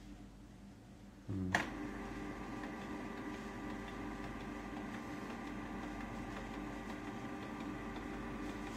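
Canon MP287 inkjet printer starting a print job: a short burst of motor noise about a second and a half in, then its paper-feed and carriage motors running steadily with a hum of several level tones.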